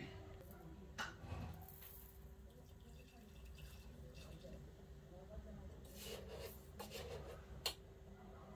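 Quiet kitchen room tone with a faint steady hum and a few light clicks and knocks, the sharpest one shortly before the end.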